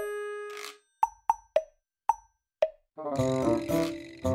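Playful background music: a held note fades out, then five short pitched plops follow with silence between them, and a bouncy tune with chords comes back about three seconds in.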